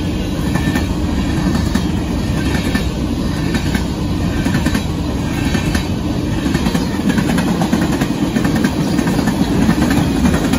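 Freight train cars, covered hoppers and tank cars, rolling past at close range: a loud steady rumble of steel wheels on the rails, with light clicks as the wheels cross rail joints.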